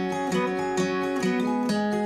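Acoustic guitar playing the instrumental intro of a song, a steady run of plucked and strummed chord notes.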